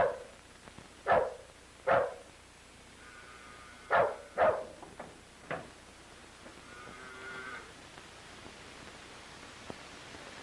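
A dog barking: six short, sharp barks in the first six seconds, unevenly spaced, then quiet except for faint background noise from the old film soundtrack.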